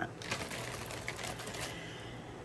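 Quick run of small plastic clicks and taps as a set of push-pin duvet clips is handled and fitted together, thinning out toward the end.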